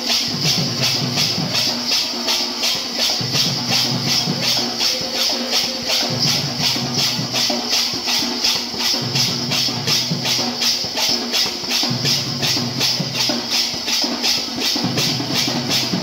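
Live kirtan music: hand cymbals struck in a fast, even beat, about four strokes a second, over a barrel drum playing a repeating low phrase.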